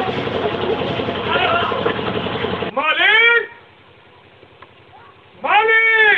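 Several voices shouting over one another in a scuffle, then two long wailing cries, one about three seconds in and one near the end, each rising and then falling in pitch, with a quiet gap between.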